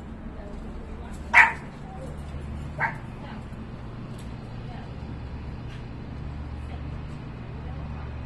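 A service dog barking: one loud bark about a second and a half in and a quieter one near three seconds, over a steady low hum.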